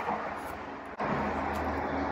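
Steady low hum, like an engine running, setting in about a second in after a brief drop in level. Under it, light rustling of a nylon dog leash being handled.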